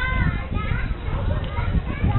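Passers-by talking as they walk past, some voices high-pitched like children's, over a steady low rumble.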